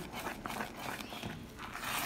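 A silicone spatula stirring and scraping a thick chocolate condensed-milk mixture around the bottom of a pan, a soft, irregular swishing. The mixture is stirred continuously over low heat to keep it from sticking to the bottom.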